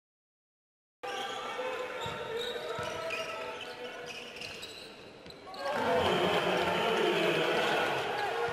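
Basketball game sound in an arena, starting suddenly about a second in: a ball bouncing on the court, with players moving and voices. A little past halfway it swells much louder with crowd noise and voices, around a basket being scored.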